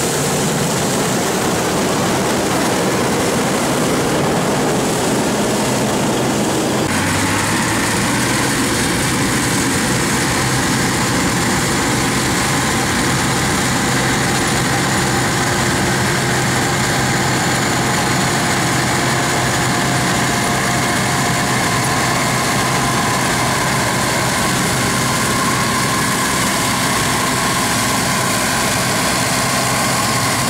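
Combine harvester diesel engine and threshing machinery running steadily under harvest load. About seven seconds in the sound changes abruptly from a Claas Dominator 88 to a Bizon Z-056 combine, whose diesel keeps up a steady drone.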